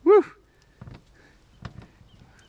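A man's short, high "whoo" of delight, rising then falling in pitch, followed by a couple of faint knocks.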